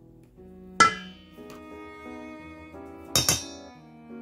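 A metal spoon clinks against a stainless steel mixing bowl, once about a second in and twice in quick succession near the end, each strike ringing briefly. Gentle background music plays throughout.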